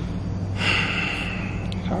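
A man's heavy sigh, a breath pushed out through a cloth face mask for about a second starting half a second in, over a steady low hum.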